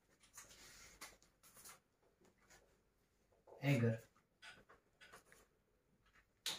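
Dry-erase marker writing on a whiteboard in faint short scratchy strokes, one run before and one after a single spoken word midway.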